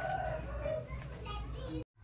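Faint children's voices in the background over a low steady hum; all sound cuts off abruptly near the end.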